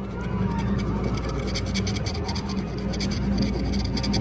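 A coin scratching the coating off a paper scratch-off lottery ticket in quick, rapid strokes, with a gasp at the start.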